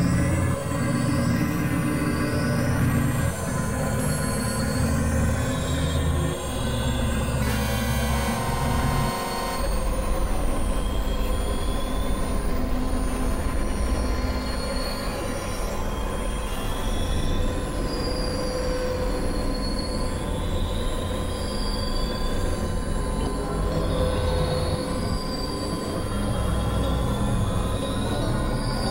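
Experimental electronic drone and noise music, with high squealing pitch glides recurring every second or two over a steady low drone. The heavy low end thins out about nine seconds in.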